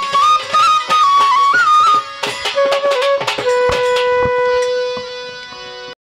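Folk ensemble playing the end of a Bengali song. A bamboo flute plays a short melody in steady, stepped notes, then holds one long lower note that fades near the end, with scattered hand-drum strokes underneath.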